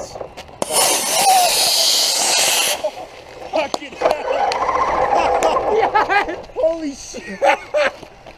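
Model rocket motor igniting and burning: a loud rushing hiss that starts suddenly and cuts off after about two seconds. Excited shouting and talk follow.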